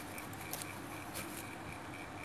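Hand sewing: a needle and thread drawn through crocheted fabric, with two brief scratchy pulls about half a second and just over a second in. Under it a steady hiss and a faint high pulse about four times a second.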